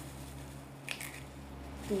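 An egg being cracked open by hand over a mixing bowl: a faint, short crack of shell a little under a second in, then a smaller tick, against a steady low hum.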